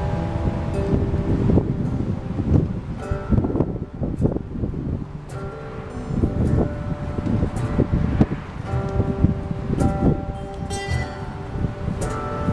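Acoustic guitars playing an instrumental passage, with plucked notes and chords left to ring. Wind rumbles on the microphone underneath.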